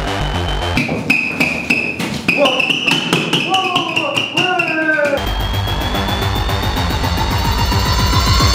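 Electronic background music whose beat drops out after about a second. During the break a quick, irregular run of light hits from toy hammers lands on a head. The beat comes back a little after the middle, with a rising sweep near the end.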